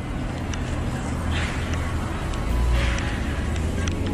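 Steady low rumble of outdoor background noise with two brief rustling scrapes as a rubber air-pump hose is handled and carried.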